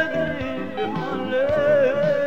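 Ethiopian gospel song in Amharic: a singer holds long, wavering notes over continuous instrumental backing.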